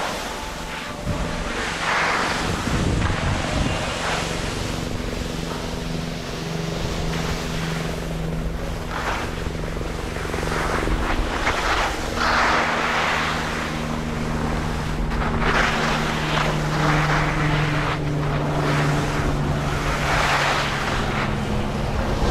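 Skis scraping and carving across packed snow in repeated hissing surges, one per turn, over steady wind rush on the microphone. A steady low mechanical hum runs underneath from about a quarter of the way in.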